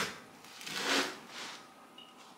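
Serrated bread knife sawing through the crisp crust of a sourdough loaf: a sharp click at the start, then a crackling rasp about a second in as the cut finishes through the heel.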